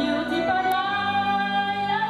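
A woman singing through a microphone with electric keyboard accompaniment. She moves onto a long held note about half a second in.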